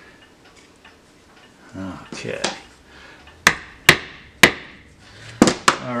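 Five sharp hammer taps on upholstery tacks being driven through burlap into a cedar board: three spaced about half a second apart in the middle, then two quicker ones near the end.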